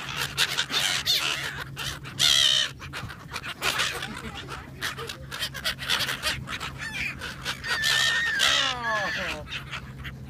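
A flock of gulls calling around the camera, many overlapping squawks with a burst about two seconds in and a run of falling calls about eight seconds in.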